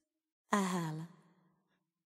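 A single short, breathy sigh from a voice, its pitch falling slightly, starting about half a second in and trailing away within a second.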